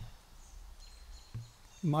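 Faint outdoor background noise with a few thin high chirps around the middle and a brief low sound about a second and a half in, then a man starts speaking near the end.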